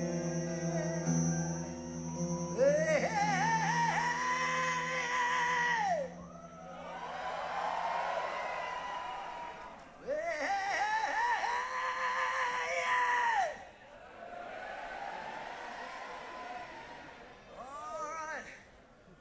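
Call-and-response between a rock singer and a concert crowd: the singer holds a long, wavering vocal call of about three seconds and the audience sings it back as a mass of voices, twice over. A sustained band chord sounds under the first few seconds.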